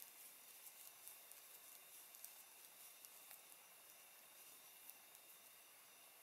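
Near silence: faint room tone with a few soft, scattered ticks of knitting needles working stitches.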